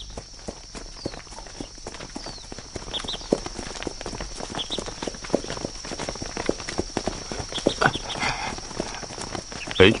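Many footsteps of a walking column mixed with the clip-clop of a horse's hooves, a steady patter of short knocks, with faint voices behind.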